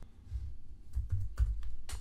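Typing on a computer keyboard: a few scattered keystrokes as code is entered.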